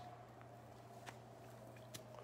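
Near silence: room tone with a faint steady low hum and a faint click or two.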